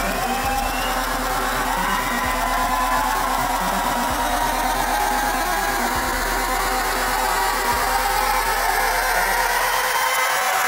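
Loud, harsh, distorted electronic noise drone from a digital-hardcore band's live set, a steady wash with a low hum underneath that cuts out near the end.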